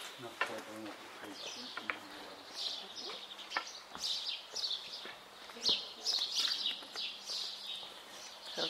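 Small birds chirping in quick, overlapping calls, busiest from about two seconds in until near the end, with a few sharp clicks among them.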